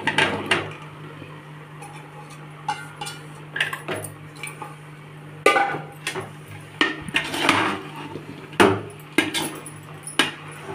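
Sliced mushrooms tipped from a steel bowl into an aluminium pot, the bowl scraping on the rim, then a metal spoon clinking and scraping against the pot in short separate strokes as they are stirred into the masala. A steady low hum runs underneath.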